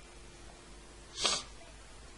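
One short, sharp huff of breath, a little over a second in.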